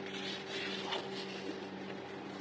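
Paper sticker sheets rustling and sliding against one another as they are handled and shuffled, with a few small ticks, over a steady low hum.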